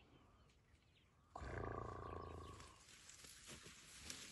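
A young African elephant gives a loud, low roar-like call that starts abruptly just over a second in and lasts about a second and a half, followed by rustling of bush.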